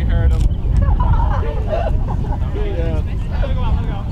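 Shouted calls from several voices across an open field during play, over a steady low rumble.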